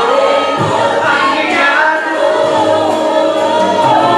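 A man singing a gospel worship song into a handheld microphone, amplified, holding a long note through the second half.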